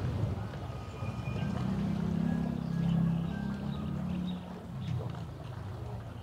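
Low engine drone of a boat on the river, swelling in the middle and fading again, with a few light clinks of a metal ladle as meatballs are served from the pot.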